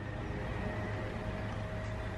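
Steady low hum of outdoor background noise, unchanging throughout, with no clear event standing out.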